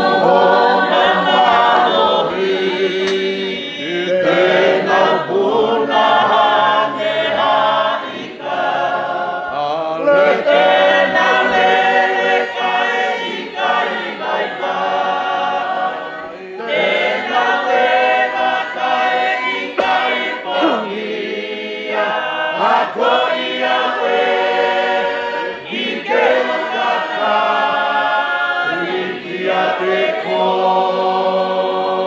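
Tongan congregation singing a hymn together in long phrases, with brief pauses between them.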